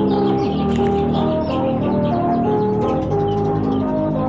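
Instrumental background music with no vocals: held chords that change twice, with a simple melody line above them.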